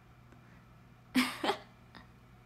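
A young woman gives two short, breathy bursts from the throat in quick succession about a second in, over a low steady room hum.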